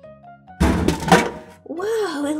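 Surprise toy packages dropping out of a toy vending machine into its pickup tray: a burst of thuds and clatter about half a second in, lasting close to a second.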